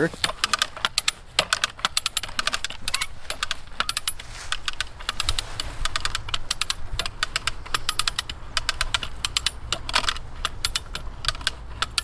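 Hand-lever ratcheting come-along being cranked, its pawl clicking rapidly in runs of clicks with the strokes of the handle. It is drawing static climbing rope up to several hundred pounds of tension.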